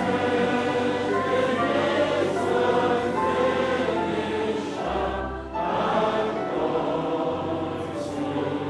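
A choir of many voices singing a slow hymn in held notes, with a brief break between phrases about five and a half seconds in.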